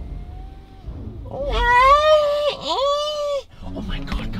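A man's fake eerie scream made with his own voice: a high, wavering wail in two long drawn-out notes with a quick dip in pitch between them, lasting about two seconds.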